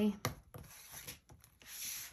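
Hands handling planners on a desk: a few light taps, then a soft rubbing slide near the end as a planner binder is drawn across the desk surface.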